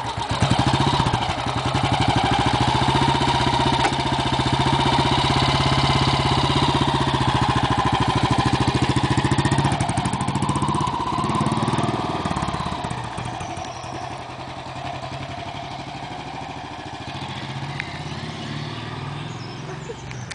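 1967 BSA 350 single-cylinder four-stroke motorcycle engine running and pulling away, its pitch rising and falling with the throttle. About twelve seconds in the sound starts to fade as the bike rides off down the street.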